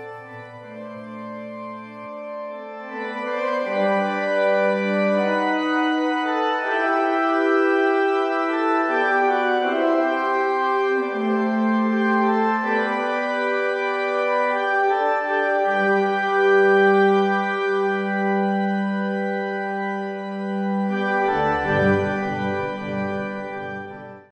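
Organ music: slow chords and moving lines of long, steadily held notes, with deeper bass notes joining near the end.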